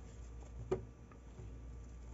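Faint handling of ribbon and fabric by hand, with one small sharp click about three quarters of a second in.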